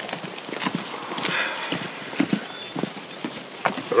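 Footsteps of several people walking on a dirt path: a run of irregular hard steps.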